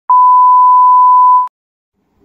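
A steady, loud pure-tone test beep of the kind played with television colour bars, one unbroken tone lasting about a second and a half and cutting off abruptly.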